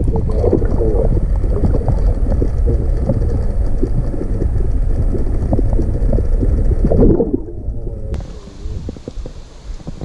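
Action-camera microphone submerged in river water: a loud, muffled underwater rumble with gurgling bubbles as hands and a released trout churn the water. About seven seconds in it drops away, and a quieter wind and river hiss from above the surface follows.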